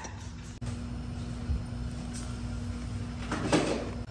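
A low steady hum with one faint steady tone running under it, then a short rustling noise near the end.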